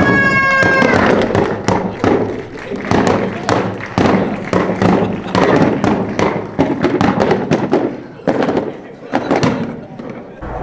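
Wooden mallets knocking on the wooden lids of sake casks for kagami-biraki, a dense run of sharp thuds, with voices over them.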